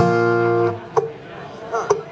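Acoustic guitar strummed once: a full chord rings for about three-quarters of a second, then is damped. A single short plucked note follows about a second in.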